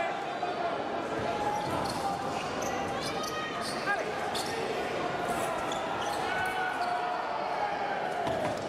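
Fencers' shoes stamping, tapping and squeaking on the fencing strip as they advance and retreat, over a steady murmur of voices in a large hall.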